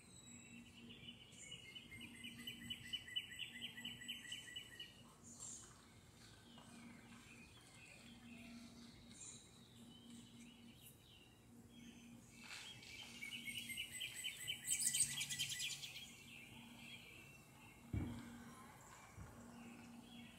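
A songbird singing two long, rapid trills of quickly repeated notes, each lasting a few seconds, one about a second in and another past the middle. A single soft thump comes near the end.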